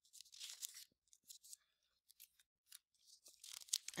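Faint rustle of paper pages being turned in a thick code book: soft brushes of paper about half a second in and again shortly before the end.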